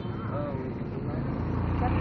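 People talking over a low, steady engine hum from a nearby motor vehicle. The hum grows louder over the last second or so.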